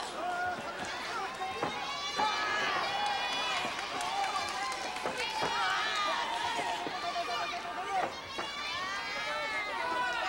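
Crowd of high-pitched voices shouting and cheering over one another at a pro-wrestling match, with a few thuds of bodies on the ring canvas.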